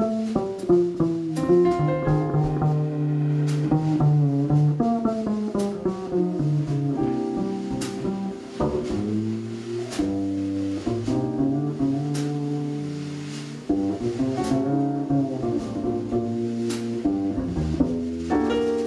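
Instrumental live jazz with no vocals: plucked double bass playing a melodic line over piano chords, with sparse cymbal taps from the drum kit.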